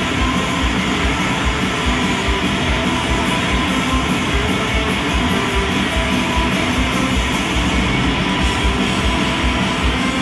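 Rock band playing live at high volume: a dense wall of distorted electric guitars over a fast, steady drum beat.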